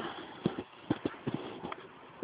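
Several short, irregular dull knocks, about six of them spread through two seconds.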